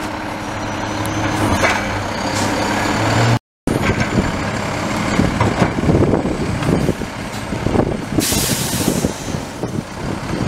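Automated side-loader recycling truck: its diesel engine runs steadily, then the sound cuts out briefly. After that the mechanical arm dumps a curbside recycling cart into the hopper, with irregular clattering of recyclables, and a short loud hiss of air about eight seconds in.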